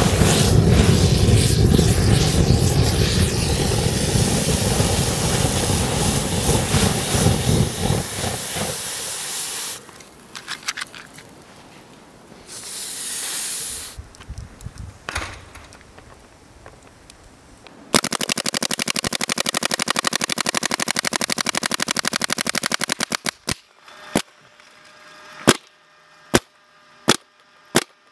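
Something burning with a loud, rushing hiss for about nine seconds, set against a paintball hopper during a durability test. Later comes a rapid burst of paintball marker fire lasting about five seconds, then several single shots about a second apart near the end.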